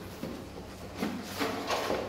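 Cardboard model-kit box being handled and fitted over a packed box: light rubbing and scraping of cardboard, mostly in the second half.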